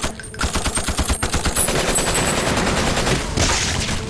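Submachine gun firing on full automatic in an action-drama soundtrack: a long, rapid, evenly spaced stream of shots that starts about half a second in and runs until near the end.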